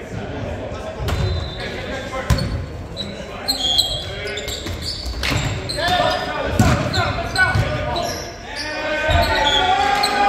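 A volleyball rally in a large gym: the ball is hit several times, each hit a sharp slap or thud that echoes around the hall. Players shout calls between hits, most of all in the second half.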